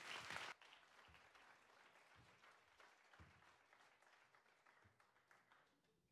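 Audience applause that cuts off suddenly about half a second in. It is followed by near silence with faint scattered knocks and clicks.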